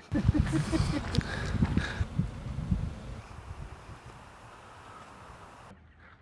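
Hurried footsteps over meadow grass with knocks from a handheld camera, loudest for the first two seconds or so, then fading to a quiet outdoor hiss. The sound changes abruptly near the end.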